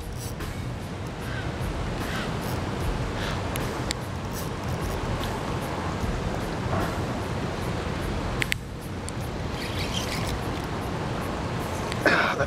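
Steady rush of turbulent, fast-flowing river water, with a few faint clicks.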